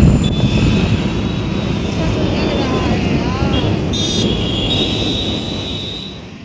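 Steady rumble of wind and road noise from moving along a busy street, with traffic and faint voices in the background.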